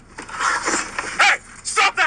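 Short, loud shouts and cries from a physical struggle with police, heard on body-camera audio, with two sharp cries about a second and a half apart near the middle.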